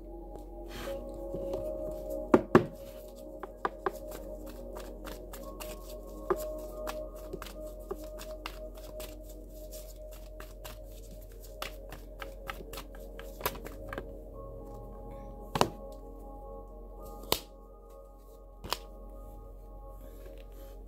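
Tarot cards being handled and shuffled by hand on a table: a run of soft card flicks and clicks with a few sharper knocks, two close together a couple of seconds in and more near the end. Under it runs steady ambient background music with long sustained tones.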